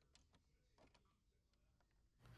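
Near silence, with a few faint ticks in the first second.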